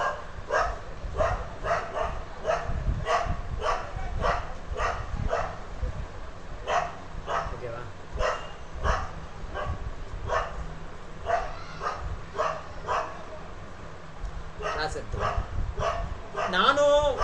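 A dog barking repeatedly in short sharp runs, about two barks a second, with a brief lull near the end.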